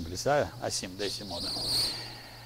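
A man's brief, halting speech sounds over a low steady hum. In the second half a steady high-pitched whine or trill comes in.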